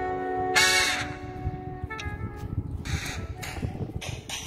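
Dance music playing, with a loud, harsh cry cutting across it about half a second in for roughly half a second.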